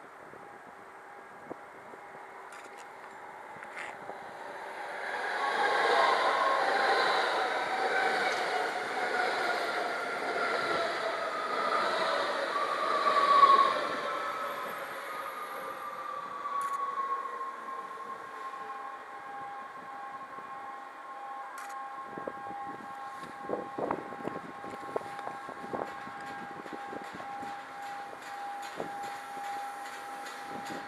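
Electric trains arriving at a station: a whine of electric traction motors falls steadily in pitch over about ten seconds as a train brakes, loudest just before it settles into a steady hum. In the second half, wheels click over rail joints as a train rolls slowly past.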